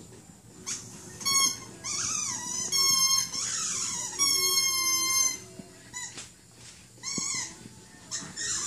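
A squeaky dog toy squeaked repeatedly in a Yorkshire terrier's mouth as it chews: about half a dozen high-pitched squeaks, some short and some held for about a second.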